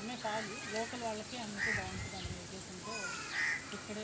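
Crows cawing several times in the background, short harsh calls a second or two apart, the loudest near the middle and near the end, over a man talking.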